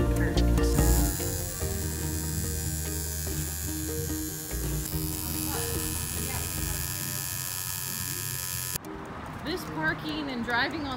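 Electric tattoo machine buzzing steadily as it works on skin, from about a second in until it cuts off near the end, with music playing underneath.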